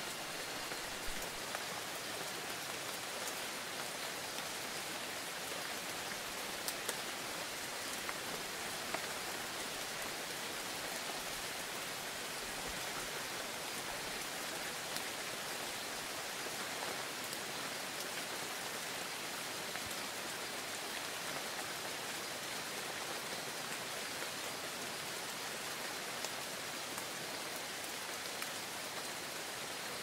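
Steady rain falling, an even hiss with a few louder single drops ticking out of it, mostly in the first ten seconds.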